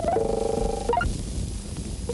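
A single buzzing, fluttering pitched tone lasting under a second, like a comic gobbling sound effect on a film soundtrack, followed by a couple of brief notes.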